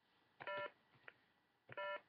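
Two short electronic beeps, each about a quarter of a second long and about a second and a half apart, with a few faint clicks between them.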